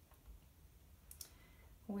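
Mostly quiet room tone, with a faint, short click about a second in: a fingertip tapping the iPad's glass touchscreen.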